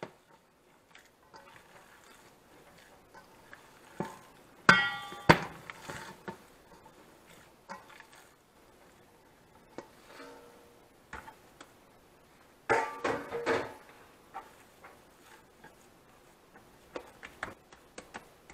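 Stainless steel mixing bowl knocking and clinking as it is handled and tipped onto a cutting board: sharp knocks about four and five seconds in, one ringing briefly, and a cluster of clatters about thirteen seconds in, with only faint handling sounds between.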